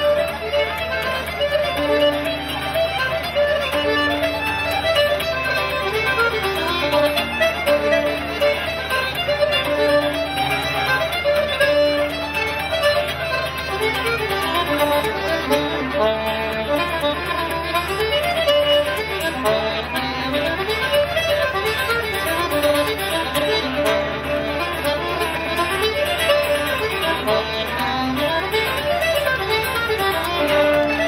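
A tune played live by fiddle, accordion and acoustic guitar, the fiddle carrying the melody over a steady guitar accompaniment.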